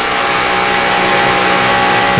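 NASCAR Nationwide Series stock cars' V8 engines running at steady full throttle, heard through an in-car camera: a loud, unchanging drone with several held tones.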